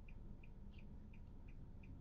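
A car's indicator ticking evenly, about three short high ticks a second, over the low steady rumble inside a stopped car.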